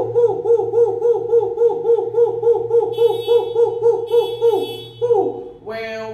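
A man's voice hooting "hoo-hoo-hoo" rapidly on one high held pitch, about four pulses a second, ending with a falling hoot near the end.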